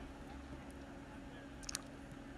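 Faint room tone with a low steady hum, and a couple of faint clicks near the end.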